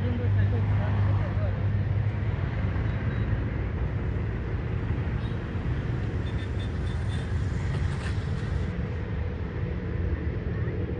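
A steady, low engine drone holding one even pitch, over a haze of outdoor background noise and voices.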